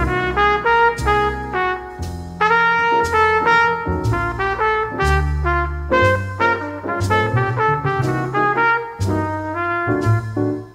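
A 1950s jazz combo recording: a horn plays the melody over bass notes that change about once a second, with light percussive accents throughout.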